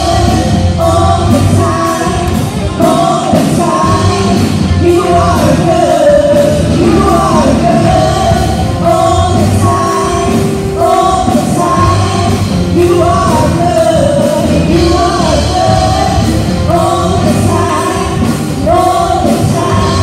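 Live worship band playing a song with a steady beat: a woman sings the lead, with backing vocals, over electric guitar and keyboard.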